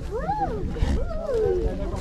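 Bull bellowing during a head-to-head fight, a long call that rises and falls in pitch, then a second falling call about a second in, over onlookers' voices.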